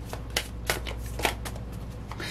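Tarot deck being shuffled in the hands: four or five short, crisp card strokes spread over two seconds.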